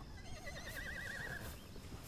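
A horse whinnying once: a quavering call about a second long that sinks slightly in pitch.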